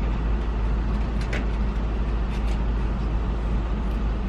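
Steady low rumble of a car idling, heard from inside the cabin while stopped, with a couple of faint brief ticks.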